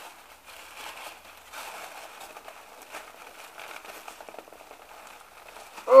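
Crinkly packing wrap being handled and crumpled while a parcel is unwrapped: a soft, continuous rustle of small crackles.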